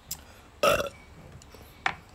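A single short, loud burp about half a second in, with a sharp click shortly before the end.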